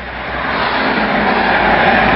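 Road traffic noise: a large truck passing close by on a highway, its rushing noise growing steadily louder.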